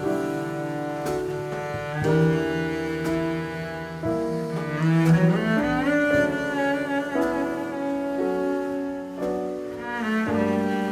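Double bass played with the bow (arco), carrying the melody in long held notes, with piano accompanying.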